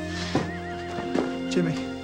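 A horse whinnying, a wavering high call that falls away in pitch, over a steady music underscore.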